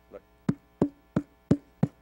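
A hand smacked into the palm five times, sharp pops about three a second, imitating a billy club being popped against a hand.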